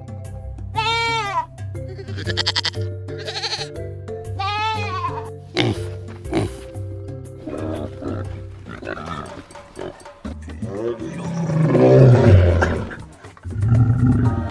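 Background music with a steady low bass line under animal calls: a chimpanzee's high, arching calls three times in the first five seconds, then pig calls, and a loud low-pitched call near the end.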